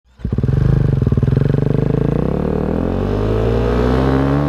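Snow bike's motorcycle engine running under load, coming in abruptly just after the start with a fast, even pulse, then its pitch climbing steadily through the second half as it accelerates.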